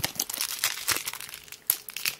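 Crinkling and tearing of a trading-card booster pack wrapper being torn open by hand, a quick irregular run of crackles.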